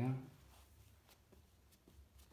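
Faint scratching and soft ticks of a hand pressing and rubbing over carpet pile at its edge against a tiled floor, feeling for a nail beneath the carpet.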